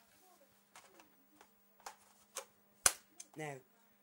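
Light plastic clicks from handling a spring airsoft rifle's magazine, then one sharp, loud click a little under three seconds in.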